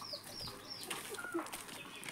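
A bird calling: a quick run of three short, high chirps, each sliding down in pitch, near the start, then a fainter single note a little later.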